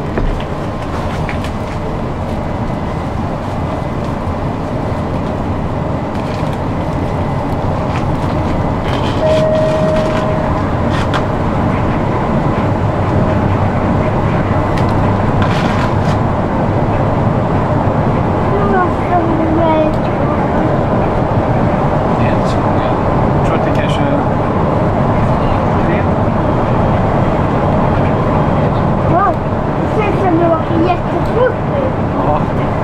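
Steady engine and road rumble heard from inside a moving city bus. It grows a little louder about eight seconds in.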